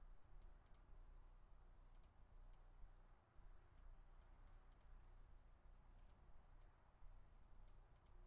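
Faint computer mouse clicks, about a dozen scattered through the stretch, some in quick pairs, as a small shape is selected and dragged into place, over a low steady background hum.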